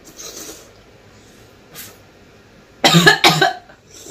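A woman coughing twice in quick succession about three seconds in, after a faint breath near the start. The coughs are brought on by the burning heat of an extremely spicy lollipop held in her mouth.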